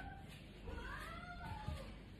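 A single drawn-out call, about a second long, that glides up in pitch and falls away again.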